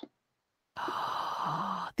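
A person's soft, breathy sigh, lasting about a second and starting a little before the middle.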